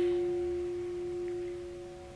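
Closing held note of alto saxophone and piano, several steady tones fading away slowly as the piece ends.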